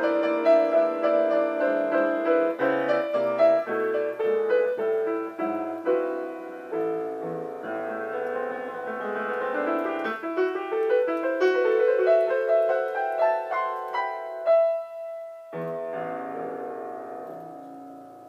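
Solo grand piano improvising in D minor, with quick runs of notes over a bass line. About fourteen seconds in, a rising run ends on a held high note as the bass drops out for a moment; then the playing resumes more softly and fades.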